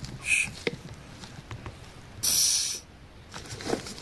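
Air hissing in the vacuum line of a Mercedes-Benz Vito 115 CDI's turbocharger actuator. There is a short puff about a third of a second in, then a longer hiss a little past two seconds as the vacuum is let off. The actuator is being tested for smooth travel and responds well.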